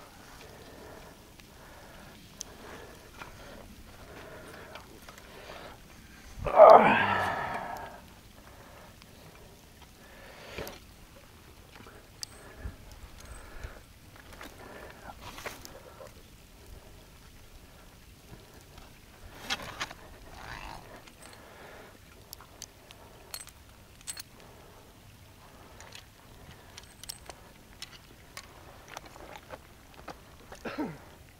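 Steel foot trap and rebar drowning rod being handled in shallow water and mud: scattered small metal clicks, splashes and rustles. A brief loud cry stands out about six and a half seconds in.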